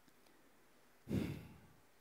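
Near silence, then about a second in a man's short audible breath caught close on a headset microphone.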